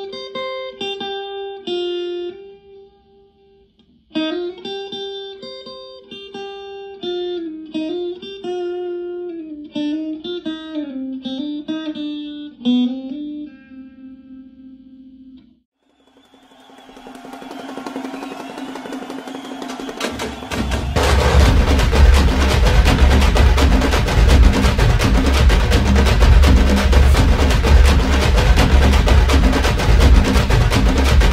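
Electric guitar played solo with a clean tone: a single-note melody with short pauses that ends about fifteen seconds in. After a brief silence, a rising swell leads into loud dance music with a heavy, steady bass beat about twenty seconds in.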